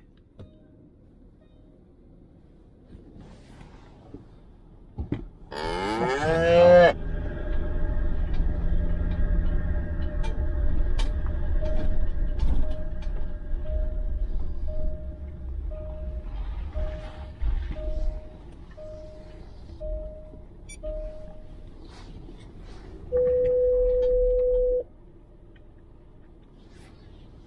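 Land Rover Discovery 4 running, heard from inside its cabin, with a loud drawn-out wavering tone about six seconds in. Later a faint chime repeats about once every three-quarters of a second for several seconds, and a steady single tone sounds for under two seconds near the end.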